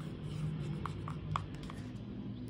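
Acrylic paint being stirred in a plastic cup with a plastic spoon: soft scraping with a few light ticks of the spoon against the cup.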